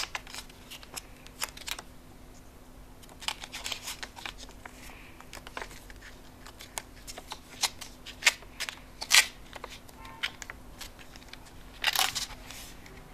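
Water-filled aluminium-foil spouted pouch handled in the hands: scattered short crinkles and crackles of the foil film as it is turned over, the sharpest about nine seconds in and at the very end.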